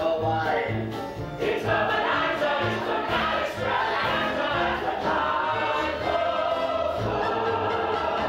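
Live Broadway show tune: a pit orchestra playing over a steady pulsing bass beat, with a group of voices singing.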